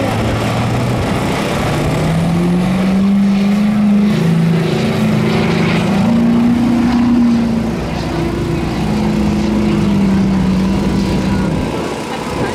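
Two pickup truck engines revving hard under load as they race side by side through a mud drag pit; the engine notes climb over the first two seconds, hold high, dip briefly about eight seconds in, then pick up again and drop off near the end.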